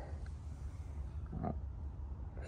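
A steady low hum with a man's short hesitant "uh" about one and a half seconds in.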